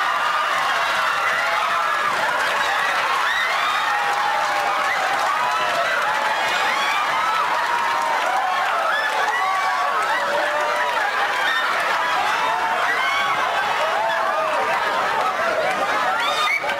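Sitcom studio audience cheering, whooping and applauding, many voices calling over one another without a break.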